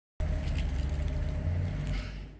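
A vehicle engine idling: a steady low rumble that starts a moment in and fades away near the end.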